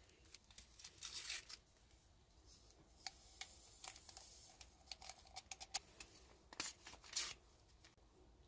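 Small MRE paper condiment packets being torn open and handled: a few short, soft rips and crinkles with light rustling between, the louder ones about a second in and near the end.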